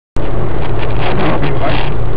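Car cabin noise while driving at motorway speed: a steady low engine and road drone with wind and tyre noise, heard from inside the car. It starts abruptly with a click just after the beginning.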